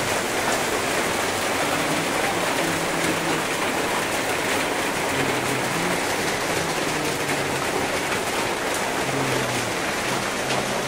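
Steady rain on a corrugated metal roof, heard from underneath as a dense, even hiss.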